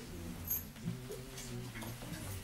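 Quiet room with a faint low hum and a few soft clicks, about half a second and one second in.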